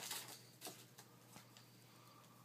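Near silence: faint room tone with a steady low hum and a few soft ticks.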